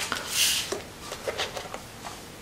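A brief rustle of paper, then a few light taps, as a paper bookmark is laid down on the page of a colouring book.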